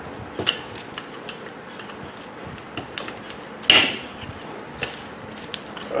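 A flat screwdriver prying at the crimped sheet-metal clamp tabs on a microwave oven magnetron's cover: scattered small metal clicks and scrapes, with one louder metallic clank a little before four seconds in. The tab is being forced open.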